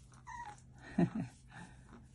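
A small pet giving short, high cries: a brief falling one near the start, then a louder one about a second in with a quick second cry right after it.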